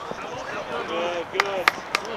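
Voices shouting and calling on a baseball field as a runner is called out at first base, with a few sharp clacks in the second half.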